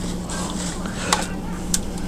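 A steady low background hum with two short, sharp clicks, one about a second in and one near the end.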